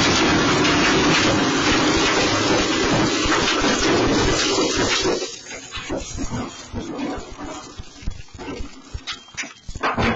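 Electric motorbike lithium battery pack in thermal runaway, burning with a loud, steady rush of venting flame. About five seconds in the rush drops away, leaving irregular crackles and pops with short cries among them.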